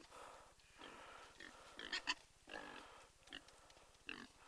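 Pig grunting faintly, a few short grunts in the second half.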